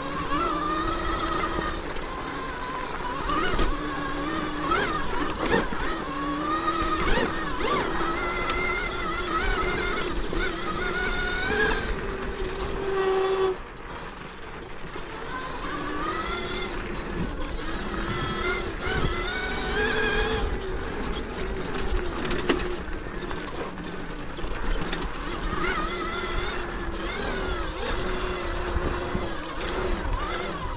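Throne Srpnt 72-volt electric dirt bike's motor whining, its pitch rising and falling with the throttle, and dropping away briefly about halfway through. Scattered knocks and rattles from the bike come through over the whine.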